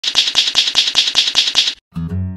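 Rapid typewriter-like key clicks, about five strokes a second, stopping abruptly just before the music begins.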